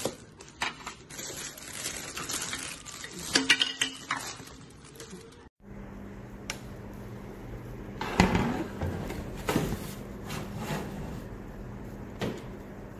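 Clear plastic packaging crinkling and rustling as it is handled, then, after a sudden cut, a low steady hum with a few knocks and clanks as a metal TV-top shelf bracket is fitted onto the edge of a TV, two louder knocks in the second half.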